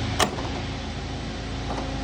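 Steady hum and hiss of the F-104's powered-up hydraulic and electrical systems on ground power, with a sharp click about a quarter second in.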